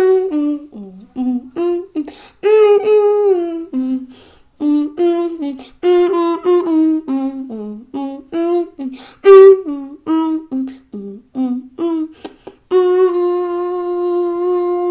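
A person humming a tune with closed lips, in short notes that step up and down in pitch, moving into a long held note near the end.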